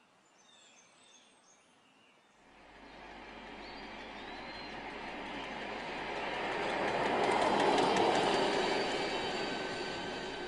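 A vehicle passing by: a rush of noise with faint whining tones that swells for several seconds, peaks about three-quarters of the way through and starts to fade. Faint bird chirps come before it.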